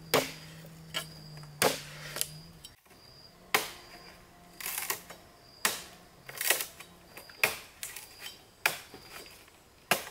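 Hollow bamboo poles knocking against each other as they are handled and moved, a sharp clack about once a second, some in quick pairs.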